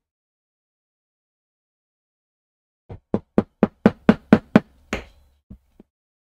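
A mallet tapping a leather pricking iron about nine times in quick succession, some four blows a second, starting about three seconds in and growing louder, driving the tines through the leather to punch stitching holes around a corner; two faint ticks follow.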